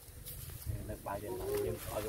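A dove cooing.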